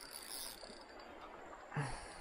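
Faint steady outdoor background noise, with a short hissing rustle just after the start and a brief voice sound near the end.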